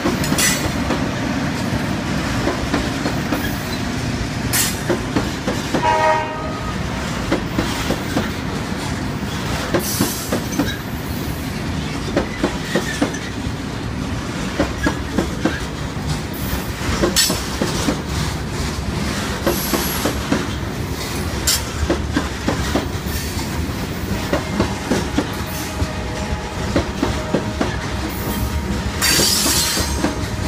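Freight train hopper cars rolling past close by: a steady rumble with rapid clicks and bangs of steel wheels over rail joints. There is a brief pitched sound about six seconds in, and a faint drawn-out squeal near the end.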